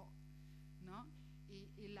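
Steady low electrical mains hum in a pause in a woman's speech, with a short spoken syllable about a second in and her voice resuming near the end.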